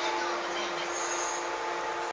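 A JR 113 series electric train standing at the platform, its equipment giving a steady hum with a couple of even tones.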